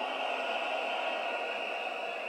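Large stadium crowd cheering and shouting in response to the speaker, a steady even din with no single voice standing out.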